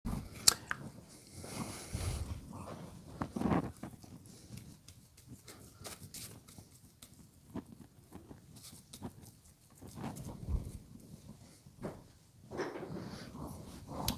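Scattered small clicks, knocks and rustles of art supplies being handled at an easel, with a few brief low sounds in between.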